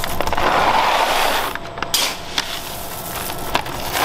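Roasted coffee beans poured from a metal scoop into a coffee bag, a rushing rattle of beans. It is loudest in the first second and a half, followed by a few sharp clicks and a quieter trickle.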